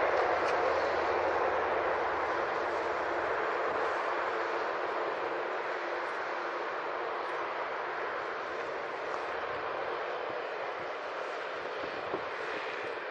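Jet engines of an IndiGo Airbus airliner rolling out after landing: a steady rushing noise that slowly fades as the aircraft slows.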